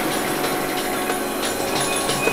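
Drum and bass mix in a breakdown: the bass and kick drums drop out, leaving a steady, dense, hissy synth texture in the mids and highs.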